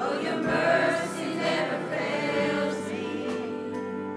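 Church choir singing a gospel song together, with instrumental accompaniment.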